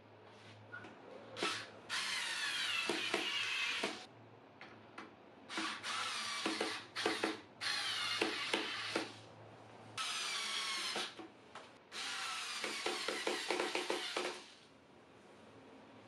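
Small cordless screwdriver driving half-inch zinc-coated flathead wood screws through a metal L bracket into a wooden chair frame. The motor runs in about six short bursts, the longest about two seconds, with its pitch shifting as each screw goes in, and light clicks and knocks from handling between runs.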